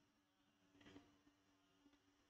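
Near silence: room tone with a faint steady hum and a very faint tick about a second in.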